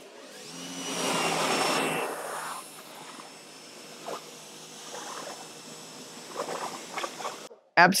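Electric pressure washer drawing about 2000 watts, its motor running and the jet spraying onto a car wheel. It is loudest for the first two and a half seconds, then settles to a quieter steady hiss.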